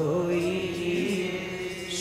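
Live Sikh Gurbani kirtan: a sung chant holding a long, nearly steady note.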